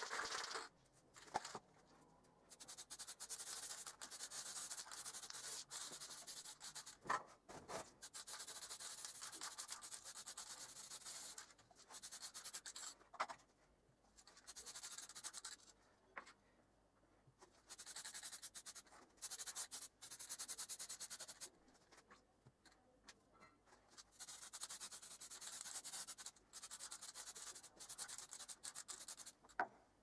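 Aerosol spray-paint can spraying red paint over a stencil in repeated hissing bursts of one to four seconds, with short pauses and a few small clicks between.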